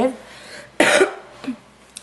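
A woman coughs once, sharply, about a second in, followed by a faint throat sound.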